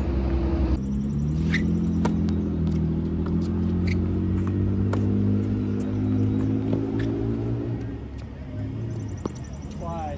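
A motor engine running nearby, low and loud, its pitch slowly rising and falling, then fading away over the last couple of seconds. A few sharp knocks of a tennis ball being struck come through it.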